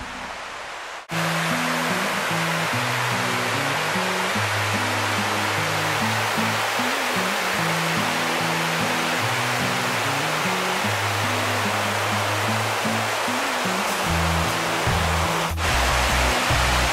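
Steady rush of a creek's rapids and waterfall, starting abruptly about a second in. Low background music notes change in steps throughout.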